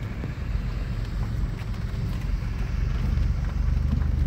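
Low, steady engine and road rumble of a slowly driving vehicle, with a low hum that grows a little stronger near the end.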